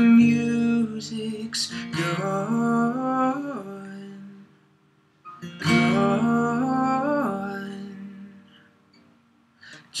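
Acoustic guitar strummed twice, each chord left to ring and fade almost to silence, with a male voice singing long held notes over them.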